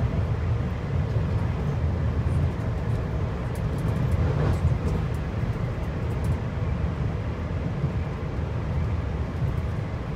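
Steady low rumble of a TEMU2000 Puyuma tilting electric multiple unit running at speed, heard inside the passenger car.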